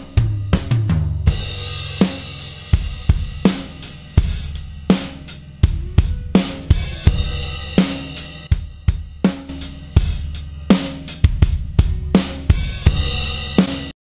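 Multitracked acoustic drum kit playing a groove: kick, snare, toms and overhead cymbals. It starts dry, then a heavily compressed and distorted parallel crush bus is faded in, which makes the drums sound more powerful and aggressive.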